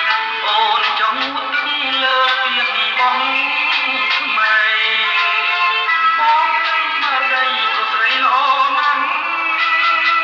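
Music: a Cambodian pop song, a man singing the chorus over band accompaniment.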